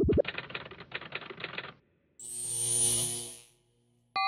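Electronic intro sting for an animated logo: about a second and a half of rapid, typing-like clicking, then a swelling whoosh with a high whistle on top that fades out.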